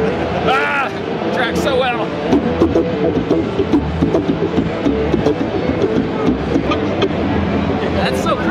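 Electric bass guitar played through a studio monitor speaker, a busy run of short plucked notes, with a voice briefly heard in the first couple of seconds.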